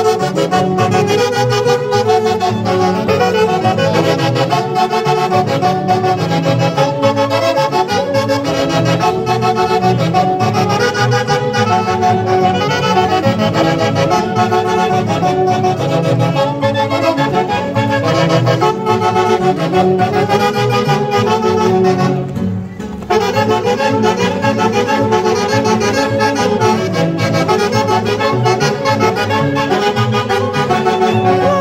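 Andean orquesta típica playing a huaylarsh: a massed saxophone section with clarinet, violin and Andean harp over a steady bass. The band thins out for a moment about three-quarters of the way through, then comes back in full.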